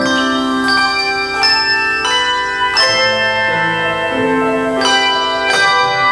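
A handbell choir ringing a piece: chords of struck handbells, a new strike about every half second to a second, each note ringing on and overlapping the next.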